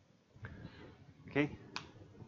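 A man says a short "okay", followed right after by one sharp click.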